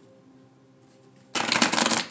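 Deck of oracle cards being shuffled by hand: a loud burst of rapid papery riffling that starts a little past halfway and runs for about half a second.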